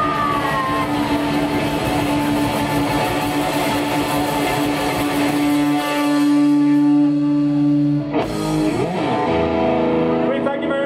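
Live punk rock band playing an instrumental stretch with no singing: electric guitars hold long notes over bass and steady drumming. A guitar note slides down near the start, and about eight seconds in comes a crash followed by a bent, wavering note.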